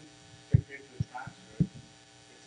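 Steady electrical mains hum, with three low thumps about half a second apart and a faint, distant voice.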